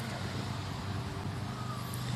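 Steady outdoor background noise with a continuous low hum, like distant traffic or a running engine, with no clear single event.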